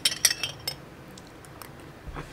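A spoon clinking against the inside of a glass jar while stirring coffee: a quick run of sharp clinks in the first second, then a few faint ticks.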